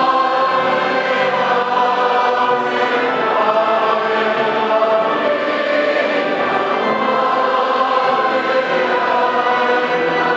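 Choir and congregation singing a processional hymn in a large vaulted cathedral, in long held notes.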